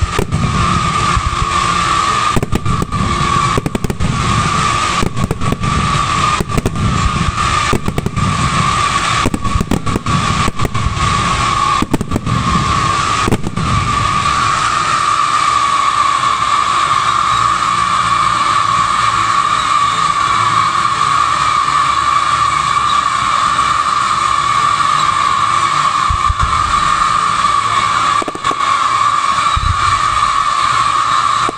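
Fireworks display: a continuous shrill whistling from many whistling fireworks going up together, with repeated bangs from bursting shells during the first half that then die away.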